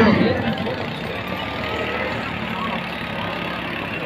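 Crowd of spectators chattering, with a steady low hum underneath; a man's loud voice trails off just after the start.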